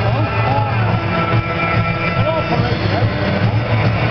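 Music playing over a stadium public-address system with a steady heavy bass, mixed with the voices of a large crowd.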